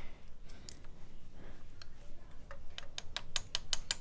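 Light metallic clinks of engine parts being handled, then, about three seconds in, a quick even run of sharp clicks, seven or eight a second: a ratchet wrench working a bolt on a Yamaha 125Z engine.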